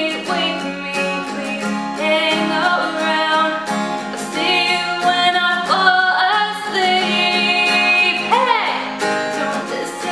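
A woman singing along to her own acoustic guitar, capoed at the first fret and strummed in a steady down-down-down-down-up pattern. The voice carries the melody over the regular strums.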